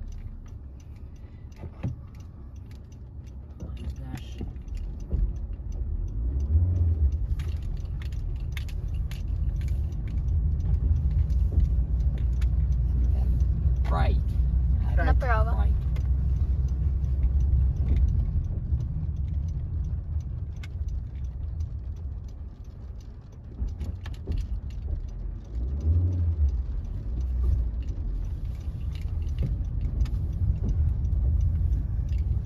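A manual-transmission car's engine and road noise heard inside the cabin, a low rumble building from about five seconds in as the car gets going after a stall. The rumble eases briefly about three-quarters of the way through, then picks up again.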